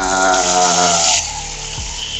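Sink tap turned on, water running into a glass vessel basin. The flow is loudest for the first second or so, then settles into a softer steady stream.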